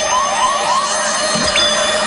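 Siren-like wailing sound effect added in editing: a steady high tone with short, repeated rising whoops.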